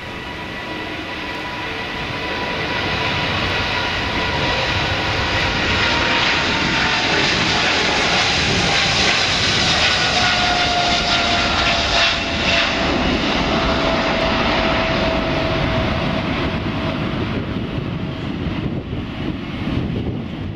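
Boeing 777-200ER's twin General Electric GE90 turbofans at takeoff thrust during the takeoff roll, lift-off and climb-out: a heavy rumble under a high whine that falls in pitch as the jet passes. It builds over the first few seconds and eases slightly near the end.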